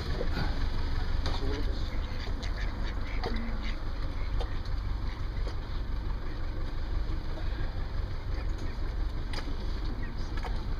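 A duck quacking over a steady low rumble.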